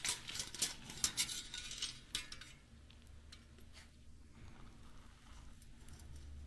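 Light metallic clicks and clinks as a steel mole trap's plate and wire springs are handled with gloved hands and pliers, a scatter of them in the first two seconds or so.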